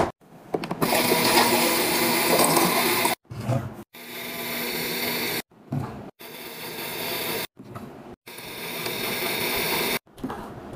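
Refrigerator water dispenser running in several stretches of one to two seconds, each cut off abruptly. Under the rush of water is a steady hum, and in two stretches the sound grows slowly louder as the container fills.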